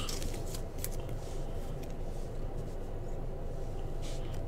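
A stack of glossy Panini Prizm football trading cards being flipped through by hand: soft, scattered clicks and slides of card against card.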